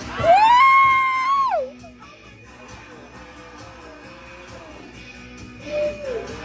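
A long high whoop from the group: it rises, holds for about a second, then slides down and stops about a second and a half in. After it, quieter background music with a faint held note.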